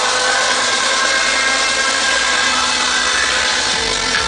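Live trance music in a breakdown: the kick drum and bass drop out, leaving a loud, noisy wash with held synth tones over a cheering crowd. The bass comes back in near the end.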